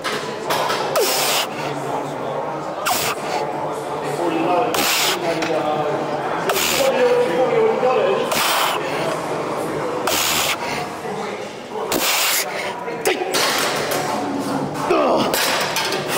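A man breathing hard through a set on a seated chest press machine: a sharp, noisy breath about every one and a half to two seconds, in time with the reps, with strained voice sounds between them.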